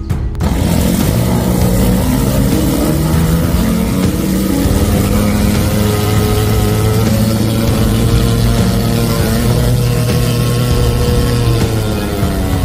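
High-pressure sewer jetter blasting water through its hose into a blocked storm drain: a steady hiss of the jet over a steady engine hum, starting about half a second in.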